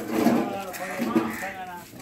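Men's voices talking, with an animal bleating in a wavering call about one and a half seconds in.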